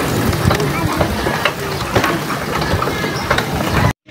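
The metal frame of a becak odong-odong ride cart rattling and clicking steadily as it rolls over paving blocks. The sound cuts off suddenly near the end.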